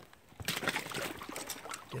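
Shallow water splashing and trickling as a steel body-grip beaver trap and gloved hands are worked down into a lodge run. Irregular small splashes and drips start about half a second in.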